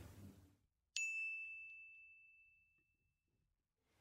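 A single bright ding, a bell-like chime sound effect, struck about a second in and fading away over about two seconds.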